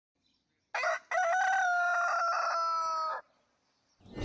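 Rooster crowing: a short first note, then one long held note that falls slightly in pitch and cuts off suddenly.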